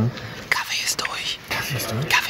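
A man whispering close to the microphone in short breathy phrases.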